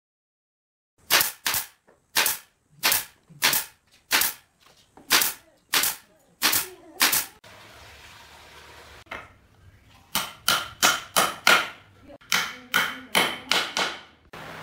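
Hammer blows on wood and nails: about a dozen sharp strikes at a steady pace, then after a short pause a quicker run of about ten strikes with a metallic ring.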